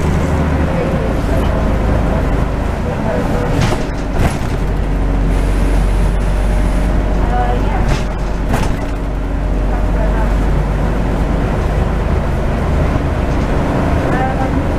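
Scania N94UD double-decker bus's diesel engine running steadily under way, heard from inside the upper deck. The engine note shifts about four seconds in. Sharp rattles or knocks come about four seconds in and again around eight seconds.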